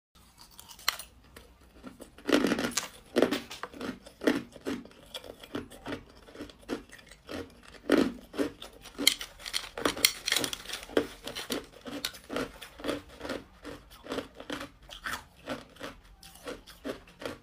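Hard, clear ice chunks being bitten and chewed: a few loud cracks, then a steady run of crunches about two or three a second.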